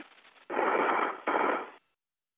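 Burst of radio static on the space-to-ground voice loop: a hiss lasting about a second, with a brief dip in the middle, that cuts off suddenly.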